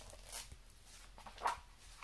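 A hardcover picture book being opened and its pages turned: a sharp tap at the start, then a few short paper rustles, the loudest about one and a half seconds in.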